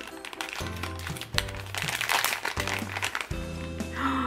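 Background music with a repeating bass line, over the crinkling and tearing of a plastic blind-bag packet being ripped open by hand.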